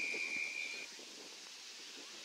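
An umpire's whistle blown in one steady, high blast lasting just under a second, then faint open-air background.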